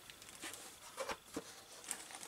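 Faint handling sounds: a few soft ticks and rustles as a metal award plaque and its plastic sleeve are moved about in the hands.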